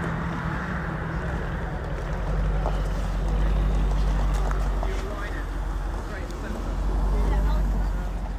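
A car engine idling, a steady low hum that fades about five seconds in, under distant voices and a low rumble that swells twice.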